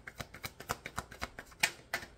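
A deck of tarot cards being shuffled by hand, cards slipping from one hand onto the other in a rapid, uneven series of soft clicks, about six a second, the loudest about one and a half seconds in.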